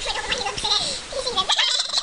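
A girl laughing, high-pitched, her pitch rising and falling in quick, broken pieces.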